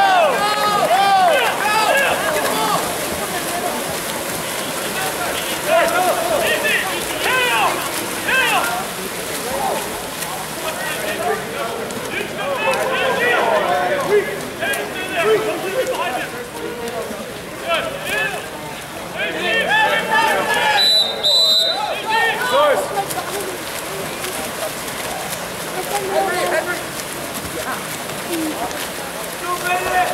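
Splashing of water polo players swimming and thrashing in the pool, under steady shouting from people on the deck. A short, shrill whistle sounds about two-thirds of the way through.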